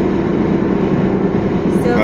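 Steady road and engine drone inside a moving car's cabin, a low hum with no change in pitch.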